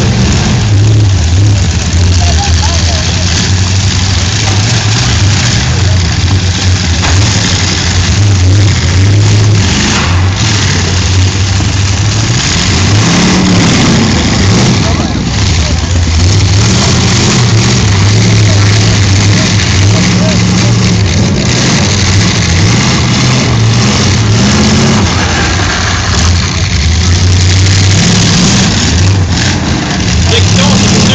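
Demolition derby cars' engines running and revving hard as the cars push and ram one another, with a few sharp impacts along the way, very loud. Voices are heard under the engines.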